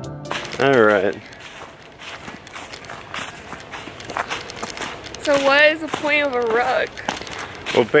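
Footsteps rustling and crackling through dry fallen leaves as two people walk a woodland trail, with a couple of short vocal sounds without words, about half a second in and again around five to seven seconds in.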